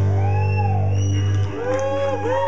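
A live rock band's final chord ringing out, a low bass note held and then cut off about one and a half seconds in, with sliding, arching pitched tones rising and falling over it.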